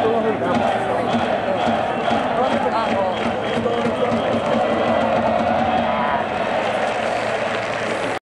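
Large crowd of baseball fans in a cheering section shouting and chanting together, many voices at once, with a faint regular beat underneath, in a domed ballpark.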